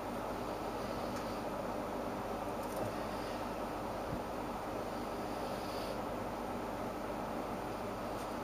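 Steady low electrical hum with an even hiss over it, and a faint tick about four seconds in.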